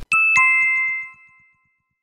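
Two-note falling chime sound effect, a bright 'ding-dong' with the second note lower about a quarter second after the first, marking an on-screen caption popping up. The notes ring out and fade within about a second and a half.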